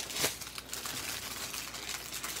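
Small clear plastic bags of diamond-painting drills crinkling and rustling as a hand sorts through them, with a louder crackle just after the start.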